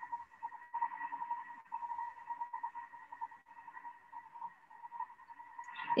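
Thermomix running on a low stirring speed while it cooks the chopped apple and onion, a faint steady whine. A few faint crackles come from stale bread being torn by hand.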